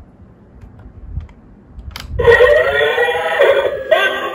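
A few faint clicks and knocks as the head button of a battery-powered Black Panther dancing robot toy is pressed. About two seconds in, the toy's built-in speaker starts playing its dance song loudly.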